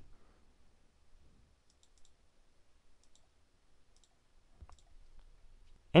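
A handful of faint computer mouse clicks, some in quick pairs, scattered across an otherwise quiet stretch.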